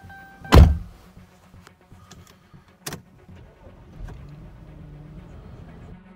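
Car door shut from inside with one loud thump about half a second in, a sharp click near three seconds, then a low car engine hum from about four seconds in.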